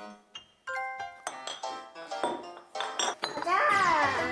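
Light background music with bright, bell-like notes, and a high voice near the end.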